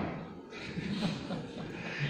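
A man's soft laughter.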